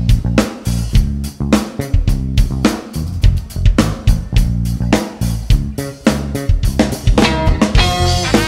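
Live band playing an instrumental passage: drum kit, bass and electric guitar over a steady beat. A horn line comes in near the end.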